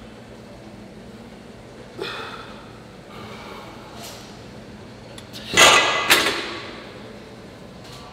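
A weightlifter's forceful exhales during presses on a plate-loaded converging chest press machine: a short one about two seconds in and a louder double exhale, strained and partly voiced, near six seconds.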